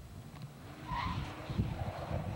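A car driving past, its tyre and road noise swelling about a second in.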